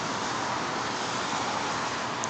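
Steady, even rushing background noise with no distinct events in it.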